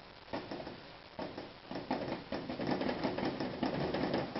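Rapid, irregular tapping of a loaded oil-paint brush dabbing paint on. The taps start about a third of a second in and grow denser and louder after the first second.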